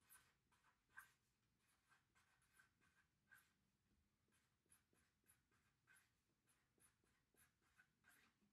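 Marker writing on paper: faint, short, irregular scratchy strokes.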